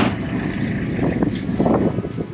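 Farm tractor engine running steadily while the cows' feed mix is made, with a sharp click at the very start.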